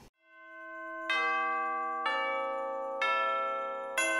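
Background music fading in: a soft held tone swells up, then chime-like bell notes are struck about once a second, each ringing on and fading.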